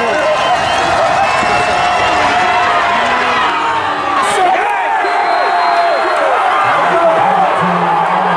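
Stadium crowd at a football game cheering and yelling, many voices at once, during a touchdown play.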